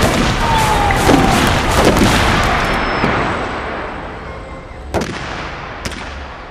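Gunfire: many shots in quick succession over a dense din for the first three seconds, which then fades away, followed by two single shots about a second apart near the end.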